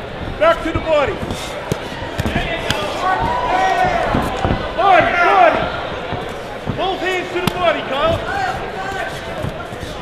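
Boxing in the ring: sharp thuds of gloved punches and boxers' feet on the canvas, under men shouting from ringside, the shouts loudest around the middle.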